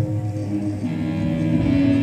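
Freely improvised ensemble music: a bowed cello and a bowed amplified palette, its metal rods sounding, with electronics. Sustained droning tones shift pitch a couple of times, and a higher held note comes in near the end.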